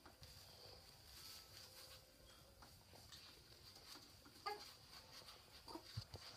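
Near silence: faint cloth rustling as hands strain against a padded steel bolt, with a single sharp click about four and a half seconds in.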